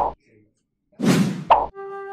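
A title-card transition sound effect heard twice, about a second apart: each a short rising swell of noise that ends in a quick hit. Near the end, music begins with held notes on a horn.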